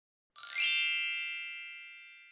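Bright chime sound effect for a channel logo: a short shimmering upward sweep about a third of a second in, settling into a ringing ding of several tones that fades away over about two seconds.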